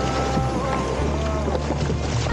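Breaking surf washing over the bow of a kayak as it pushes out through the waves, with wind on the microphone. Background music with held bass notes plays underneath.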